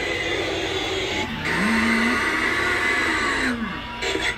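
A Halloween prop's recorded low moan, rising, holding and sliding down over about two seconds from a second in, over a steady hiss that cuts off sharply near the end.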